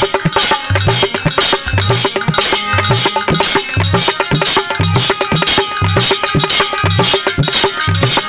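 Instrumental passage of Bhojpuri folk music: a harmonium holds a steady tone while a dholak drum sounds a deep stroke about every second, and small hand cymbals clink rapidly over it.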